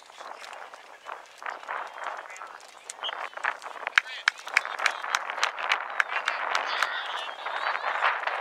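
Voices of players and spectators calling out across an outdoor youth soccer field, with a rapid string of short sharp clicks through the second half.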